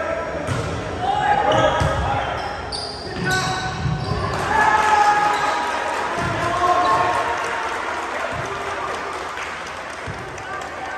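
A volleyball rally in a gym: the ball is struck a few times with sharp smacks that echo in the hall, while players shout and call out loudly, the shouting peaking midway and then fading.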